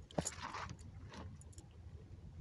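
Faint handling noises: a few soft rustles and small clicks from hands working a fishing line and a freshly caught fish.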